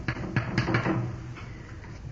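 A short pause in a man's recorded talk: room tone and recording hiss with a few faint clicks and a soft murmur in the first second, then fading quieter.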